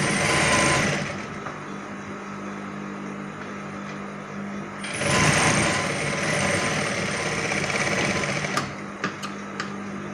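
Electric sewing machine stitching in two runs: a short burst at the start and a longer run of about three seconds from halfway in, over a steady low hum. A few sharp clicks follow near the end.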